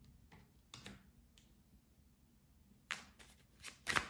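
Tarot cards being handled and set down on a tabletop: a few faint taps in the first second and a half, then a cluster of sharper clicks near the end.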